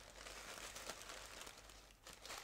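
Faint rustling and crinkling of tissue paper as a hat is lifted off it by hand.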